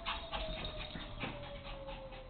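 Small dog panting rapidly, about four to five breaths a second, with a thin whine-like tone slowly falling in pitch behind it.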